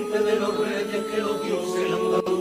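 Carnival comparsa chorus singing in harmony, holding long sustained notes that change pitch once or twice.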